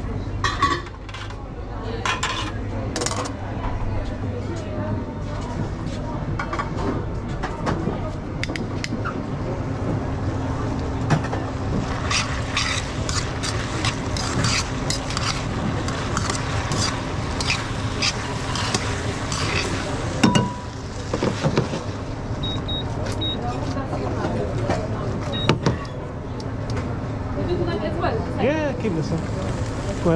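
Metal tongs clinking and scraping against a stainless steel frying pan as pasta in sauce is tossed, with runs of quick clinks around the middle. Underneath is the steady hum and voices of a busy restaurant kitchen.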